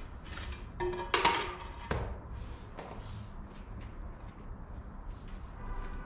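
Floor tiling work: a steel trowel scraping and clinking against tile adhesive and ceramic tile, loudest about a second in with a brief ringing, then a sharp knock just before two seconds. Quieter scrapes and taps follow as a ceramic floor tile is pressed into place.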